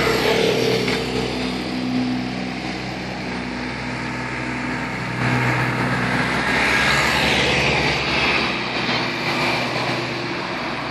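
An engine running steadily with a low hum, growing louder from about five seconds in and easing again near the end.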